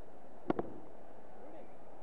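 Willow cricket bat striking a leather ball: one sharp crack about half a second in, over the steady noise of a stadium crowd.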